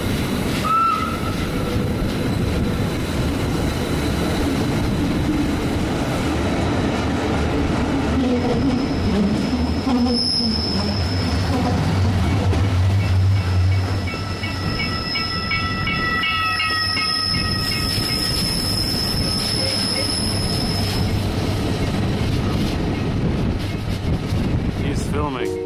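Rhaetian Railway Bernina Express train running, heard from a carriage window: a steady rumble of wheels on track. From about ten seconds in to about twenty-one seconds, the wheels squeal with a high, thin tone as the train rounds a curve.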